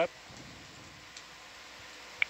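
Steady low hiss of a control-room audio feed between remarks, with one faint click just past a second in.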